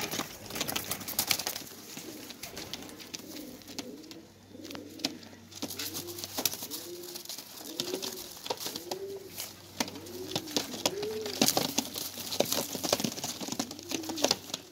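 Young racing homer pigeons cooing over and over, each coo a short rise and fall, with sharp clicks and rustles scattered throughout. The cooing starts about three seconds in.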